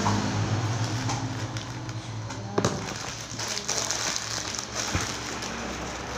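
Two sharp knocks, a loud one about two and a half seconds in and a lighter one about five seconds in, over steady room noise with a low hum.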